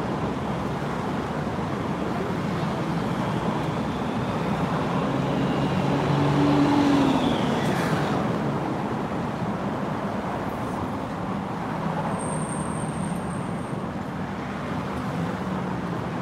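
Steady road-traffic rumble with a low engine hum, swelling as a vehicle passes about six to seven seconds in.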